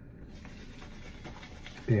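Soft sniffing: a man breathing in through his nose at a small tub of shave soap held up to his face.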